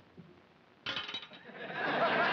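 A sudden clatter with sharp clinks about a second in, like crockery or a spoon on a plate, followed by studio audience laughter swelling up.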